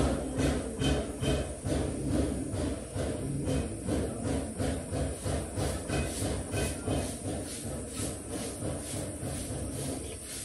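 Light, rhythmic taps of a small metal tool on a gold piece resting on a steel stake, about two to three strikes a second, as the piece is shaped by hand.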